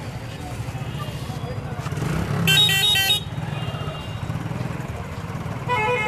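A motorcycle engine running close by with a steady low putter, picking up a little about two seconds in. A horn gives a quick string of short beeps for under a second around the middle.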